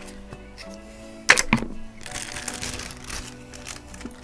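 Two sharp clicks a little over a second in, then a plastic zip bag of stickers rustling as it is handled, over soft background music.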